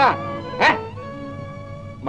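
Film background score holding steady sustained notes, with one brief sharp cry that sweeps up and down in pitch just over half a second in.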